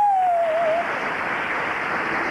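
Studio audience applauding, opened by one long call from a single voice that rises sharply and then slowly sinks.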